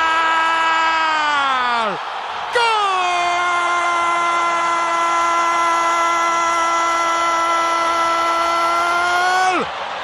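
Football commentator's drawn-out goal cry on a single held note. It breaks for a breath about two seconds in, then holds steady for about seven seconds before the pitch drops off near the end.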